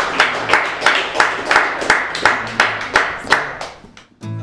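Hand claps in a steady rhythm, about three a second, over faint low acoustic guitar notes, fading out near the end.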